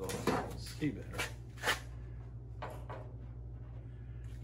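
A few sharp knocks and clanks of a primered steel bracket being handled and set against the car's steel front frame, over a steady low hum.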